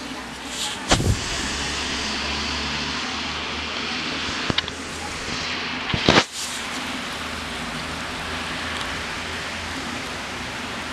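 Steady rain on a city street, with the hiss of a car's tyres passing on the wet road. A few sharp knocks cut through, the loudest about a second in and about six seconds in.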